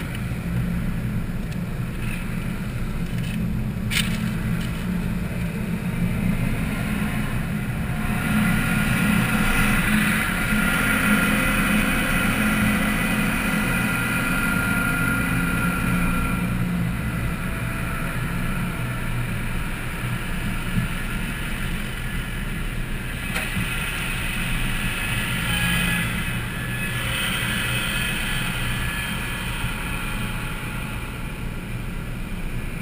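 Steady engine and road rumble inside a car's cabin as it drives slowly in traffic. A hissier stretch swells from about 8 to 16 seconds in and again near the end. There is one sharp click about 4 seconds in.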